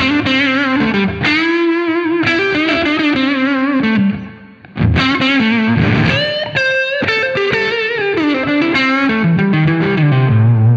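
Electric guitar (G&L ASAT Classic) through a West Co Blue Highway overdrive pedal with the gain turned up, playing a bluesy lead line of sustained, vibrato-laden notes and bends with a short break about four seconds in. The pedal's bass control feeding its drive circuit gives the distortion a kind of fuzzy edge.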